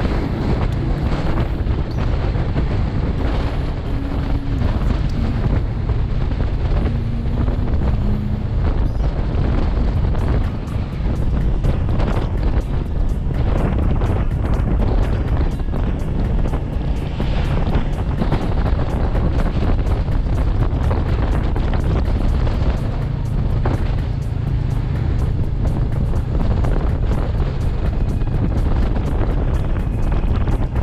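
Wind buffeting the microphone of a moving motorcycle, a steady heavy rumble with engine and road noise underneath.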